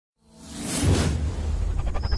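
Logo-intro sound effect: a whoosh that swells in about a quarter second in, over a deep steady bass drone.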